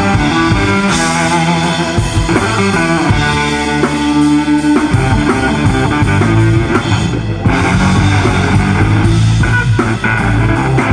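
Live rock band playing: electric guitar, bass guitar, drum kit and keyboard together at full volume, with a short break just before the middle of the passage where the band comes back in on a hit.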